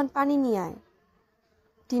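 Speech only: a reader's voice speaking a short, drawn-out word, then a pause of about a second before speech resumes.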